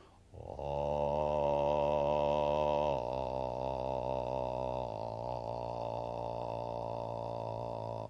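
A man's voice holding one long, very low "ah" note, with a grainy quality: the slow vibrations of a low note heard as rapid on-off pulsing. It steps down in loudness about three seconds in and again about five seconds in.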